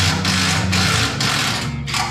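Cordless DeWalt impact driver hammering on a bolt under a trailer, a loud rattling run of about two seconds that stops near the end, over background music.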